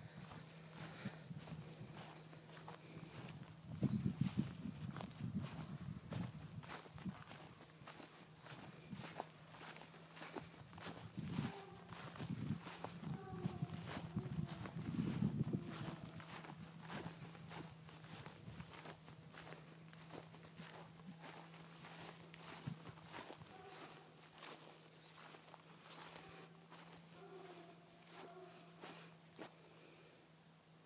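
Footsteps through dry pasture grass, with louder stretches about four seconds in and again from about eleven to sixteen seconds in, over a steady high trill of insects.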